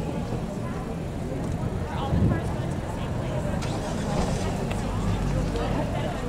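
A car engine running with a steady low rumble, under the voices of people talking close by.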